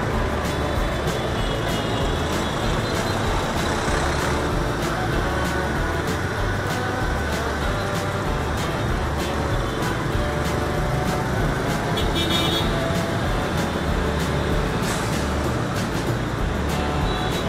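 Steady road-traffic noise of dense motorbike traffic and a coach bus running close alongside, heard from a moving motorbike.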